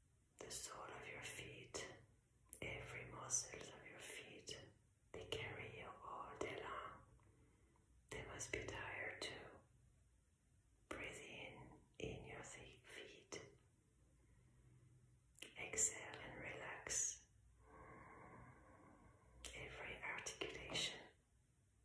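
A woman whispering slowly in short phrases, with pauses between them. Near the end there is a brief steady tone.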